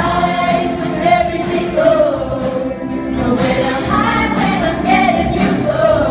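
Large mixed choir singing an upbeat pop song, backed by a live band with drums and horns.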